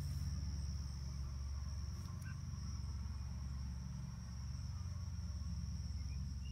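Steady high-pitched trill of an insect chorus, over a continuous low rumble.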